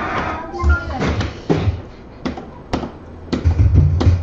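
Background music and voices in a darts bar, with a handful of sharp clicks about half a second to a second apart.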